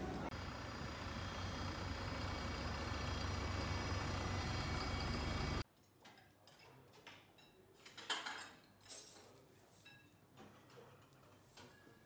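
A steady hum and rush of airport terminal background noise, with a few faint high tones, cuts off abruptly a little past the middle. After it, a quiet room with scattered light clinks of dishes, glasses and cutlery.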